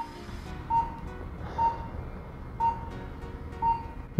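Patient monitor beeping a short, steady tone about once a second, the pulse tone that sounds with each heartbeat, with a soft slow inhale around the middle.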